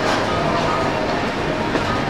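Steady background hubbub of a busy indoor shopping mall: indistinct crowd chatter and a low rumble, with no single sound standing out.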